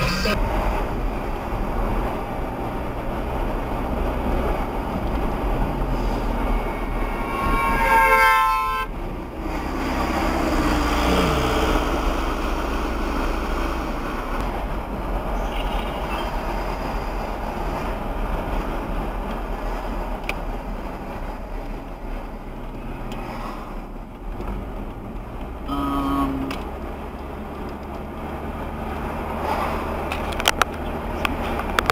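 Steady road and engine noise of a moving car, heard from the dashcam, with a loud horn sounding for about a second roughly eight seconds in. A shorter horn-like tone follows near the end.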